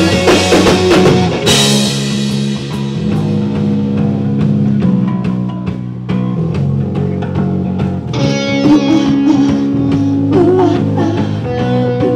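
Live rock band playing an instrumental passage on electric guitar, bass and drum kit, with a cymbal crash about a second and a half in.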